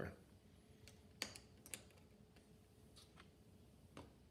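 Near silence, with a few faint, short clicks and taps as a paintbrush works in a metal watercolour pan palette.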